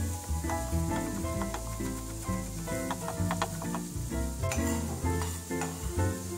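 A kitchen knife chopping fresh thyme on a wooden cutting board gives a few sharp taps, over a steady sizzle of vegetables frying in a hot pan. Background guitar music plays throughout.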